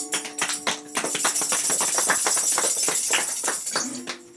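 A small audience applauding at the end of a song. The last acoustic guitar chord is still ringing under the first claps and dies away after about a second.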